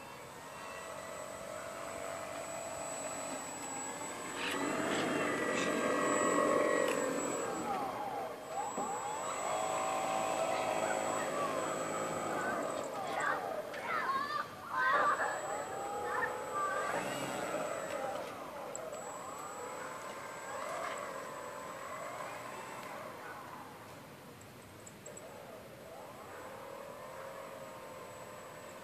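Radio-controlled model airplane's motor and propeller running on the ground, the pitch rising and falling over and over as the throttle is worked, loudest in two spells and dying down near the end.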